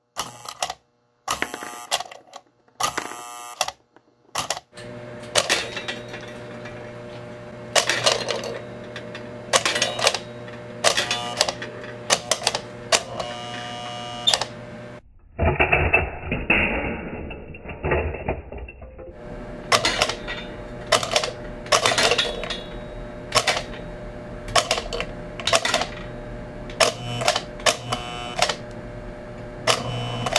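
American Flyer 973 operating milk car working again and again: its mechanism clacks, about once a second with short rapid runs, as the milkman throws milk cans out onto the platform, over a steady electrical hum. For a few seconds near the middle the sound turns duller.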